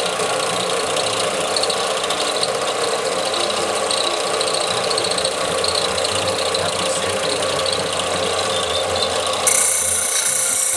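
Benchtop belt-and-disc sander running steadily while a nickel arrowhead is ground against the sanding belt. A sharper, higher-pitched grinding hiss joins near the end.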